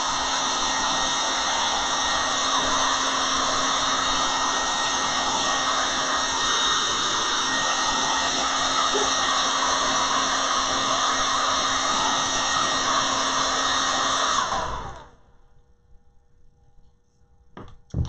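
Handheld hair dryer blowing steadily, heating transfer foil so it bonds to the purse's textured surface, then switched off about three seconds before the end.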